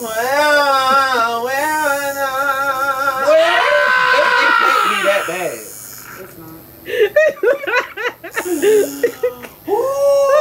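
A man singing in a loud voice, holding long wavering notes, then breaking into a higher strained note about three and a half seconds in. Short broken vocal sounds follow in the last few seconds.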